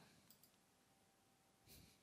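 Near silence, broken by faint short clicks: a computer mouse being clicked, once about a third of a second in and again near the end.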